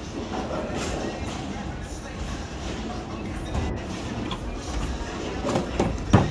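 Bowling ball rolling back through the ball return: a steady low rumble, with a few knocks near the end as it reaches the rack.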